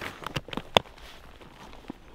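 Backpack strap buckle being clicked shut and the webbing handled: a quick run of sharp clicks, the loudest a little under a second in.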